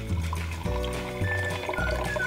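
Orange juice poured from a measuring cup into a plastic blender jar, splashing onto the blade, over background music.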